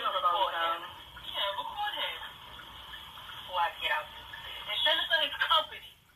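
Muffled, thin-sounding speech from the dashcam video's soundtrack, played back through a laptop's speakers and picked up by a phone, in several short spurts.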